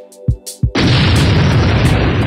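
A hip hop beat with a few kick-drum hits, then about three-quarters of a second in a loud explosion sound effect cuts in suddenly and keeps rumbling.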